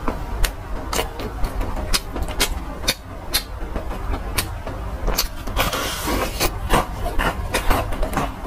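Close-miked chewing of crispy fried chicken: irregular crunches and wet mouth clicks, turning into a denser crackling crunch about five and a half seconds in as a new bite is taken through the fried crust. A steady low hum runs underneath.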